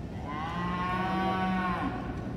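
Brahman cattle mooing: one long call of about a second and a half that rises a little at the start and then holds steady before stopping.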